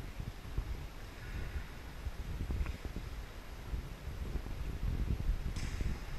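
Low, uneven rumble of wind buffeting the camera's microphone, with a brief hiss about five and a half seconds in.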